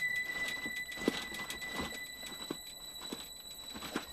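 Garden ambience: scattered short chirps and clicks, about one every half second, over a faint steady high tone.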